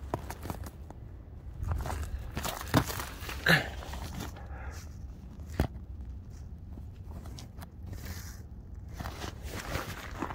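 Footsteps and handling noise from a handheld camera, with a few sharp knocks over a steady low rumble.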